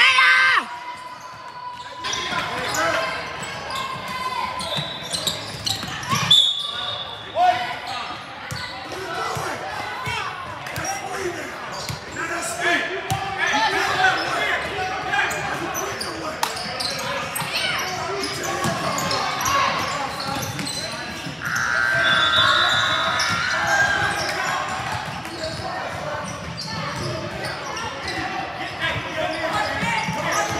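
Basketball bouncing on a hardwood gym floor during play, with voices echoing in a large indoor gym.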